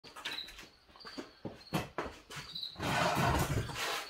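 A person moving into a seat at a workbench: faint knocks and small squeaks, then a longer stretch of rustling and shuffling as he settles in, starting about three seconds in.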